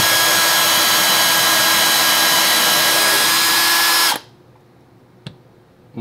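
Power drill running at a steady speed as it bores a small pilot hole into a block of oak, stopping abruptly about four seconds in. A single sharp click follows about a second later.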